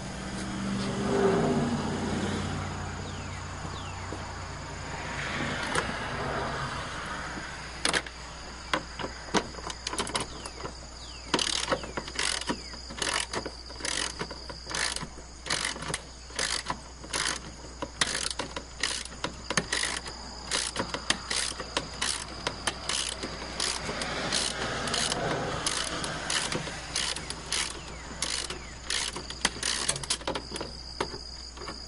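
Hand ratchet with a 10 mm socket on a 6-inch extension, clicking in quick bursts of strokes as it backs out bolts of the lower air cleaner housing. This starts about eight seconds in, after some rustling as the tool is handled and fitted.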